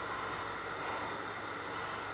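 Steady, even static hiss with a faint low hum underneath, the running background noise of a spirit box session.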